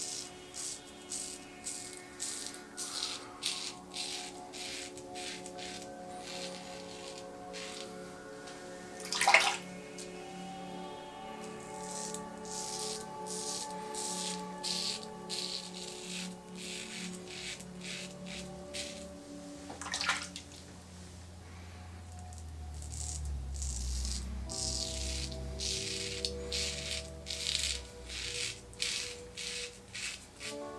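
Background music with sustained chords, over repeated short scratchy strokes of a Leaf Twig safety razor cutting through thick two-day stubble under lather. Twice a loud falling swoosh cuts through.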